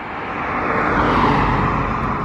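Car tyre and road noise, swelling to a peak about a second in and fading again.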